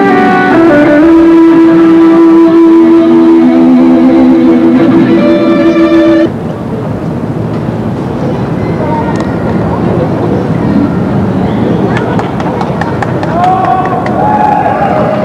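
Electric guitars playing through an amplifier, with long held notes, cutting off abruptly about six seconds in. After that, the chatter and background noise of an outdoor crowd.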